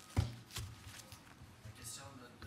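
A dull thump a fifth of a second in, the loudest sound here, followed by a lighter knock about half a second in, over faint room noise and soft clicks.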